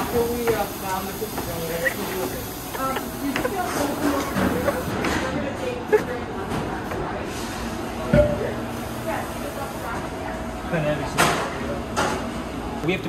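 Tap water running from a sink faucet into a plastic measuring jug, a steady hiss under voices in a busy kitchen, with a single knock about eight seconds in.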